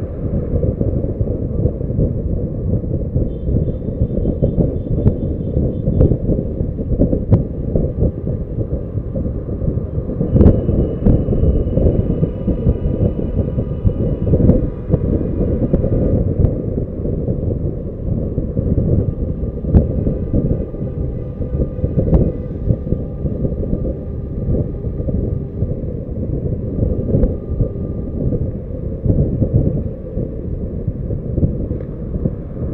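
Wind rushing over the microphone of a camera mounted on a car's bonnet while driving, mixed with road noise; faint steady high tones come and go in the background.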